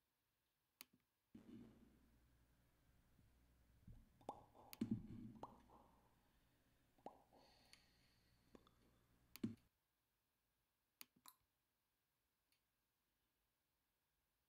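Near silence broken by faint clicks and soft knocks, as of something being handled at a desk, with a low hum that comes in for several seconds in the middle.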